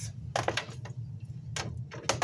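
Clear plastic bag crinkling and rustling in the hands as a raw chicken breast is taken out of it. There are a few short crackles, the last one near the end.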